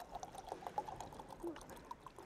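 Faint sound of liquid being poured into a glass, with small clicks and a short rising tone about one and a half seconds in.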